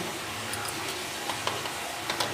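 A few faint ticks from a small paper sachet of Eno fruit salt being handled and emptied over dhokla batter in a steel bowl, over a steady background hiss.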